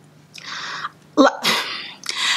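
A woman's breathy vocal sound in a pause of her talk: a soft breath, then a short voiced catch that rises in pitch and a loud breathy outburst.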